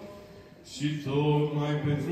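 Orthodox liturgical chant sung by a male voice on long held notes. After a short pause the chant resumes on a lower note a little under a second in, and steps up to a higher note near the end.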